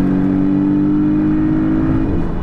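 Porsche 911 GT3's flat-six engine running at high revs on steady throttle, its pitch climbing slowly.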